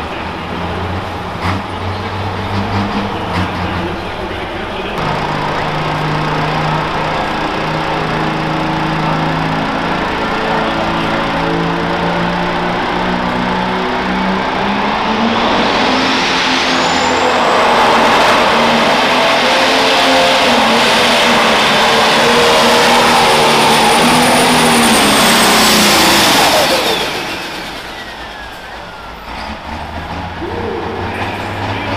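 Pro Stock pulling tractor's turbocharged diesel engine at low revs, then run at full power for about ten seconds during a pull. A high whine climbs and holds through the run. Near the end the throttle comes off, and the engine and whine fall away together.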